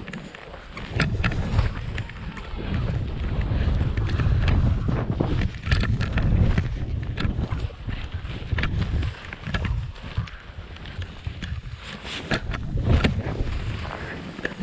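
Wind rumbling on the camera's microphone while skis run through powder and chopped snow, hissing and scraping, with repeated short sharp knocks and clatters from the skis and poles.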